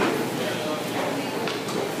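Indistinct talking of other people over a steady hiss of room noise.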